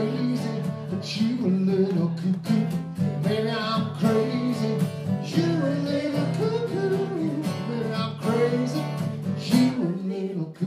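Several acoustic guitars strumming steady chords in a folk-blues song, with a melody line winding above them.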